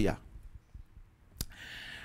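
A man's mouth click followed by a short breath drawn in, close on a lapel microphone, just after his sentence ends.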